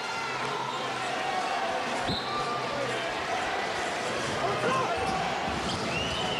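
Basketball being dribbled on a hardwood court over steady arena crowd noise, the bouncing more regular in the last second or so, with a couple of short sneaker squeaks.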